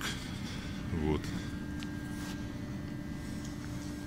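Steady low hum of a small petrol engine running, with a constant tone over it from about a second in.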